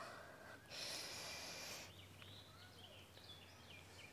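A single audible breath in through the nose, about a second long, taken as the inhale that carries the body from downward dog up into upward dog.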